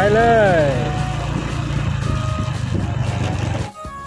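Small motorcycle engine running steadily under way, a low hum with wind noise. It cuts off abruptly near the end.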